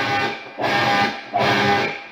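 Heritage H-150 solid-body electric guitar with Seymour Duncan '59 humbucking pickups playing full chords. Three chords are struck in quick succession, each cut short before the next, in an odd, non-4/4 rhythm.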